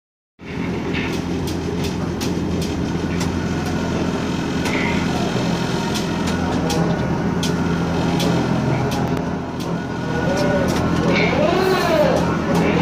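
Tower crane hoist running with a steady low hum while lifting a load on its cable, with scattered sharp clicks. A voice comes in near the end.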